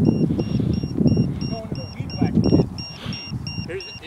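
A small RC jet's on-board low-voltage battery alarm beeps steadily, about three high beeps a second, warning that its LiPo pack is run down. Wind rumbles on the microphone through the first half, with laughter.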